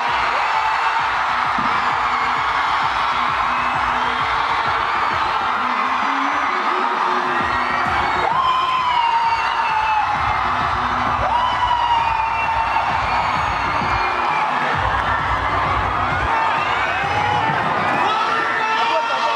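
Dance music with a steady beat plays over a large crowd cheering and whooping. The beat drops out briefly twice.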